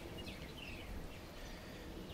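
Faint bird chirps: a scatter of short down-slurred notes, thinning out after the first second, over low background noise.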